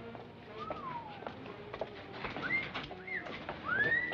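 Wolf whistles from a group of men: a falling whistle about half a second in, two short rising whistles past the middle, and a louder rising-then-falling wolf whistle near the end.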